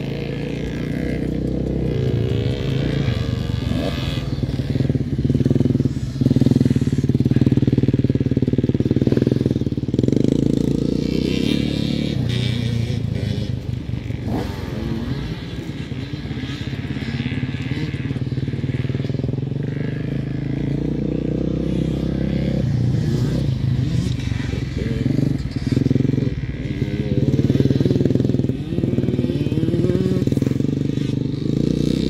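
Several motocross bikes' engines running on a dirt track, the pitch rising and falling as riders open and close the throttle.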